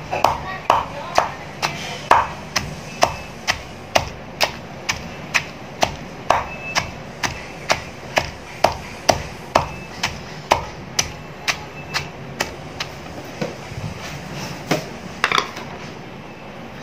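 Wooden pestle pounding a wet chopped herb-and-chilli paste in a mortar, a regular beat of about two strikes a second that stops shortly before the end.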